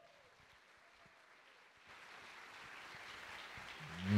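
Near silence, then about halfway through faint audience applause starts and slowly grows.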